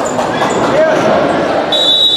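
Players' voices in a reverberant sports hall, then a referee's whistle starting near the end: a sudden, steady, high blast that signals the kickoff.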